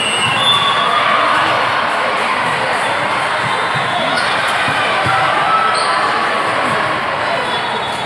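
Indoor volleyball rally in a large multi-court hall: ball hits and players' calls over a steady hubbub of many voices from players and spectators.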